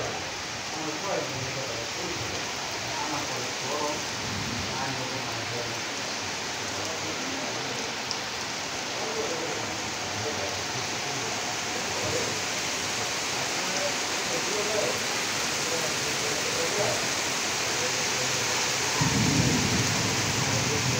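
Heavy rain pouring steadily onto trees and a wet tiled courtyard, a dense even hiss that grows slightly louder over time. Near the end a low rumble comes in suddenly.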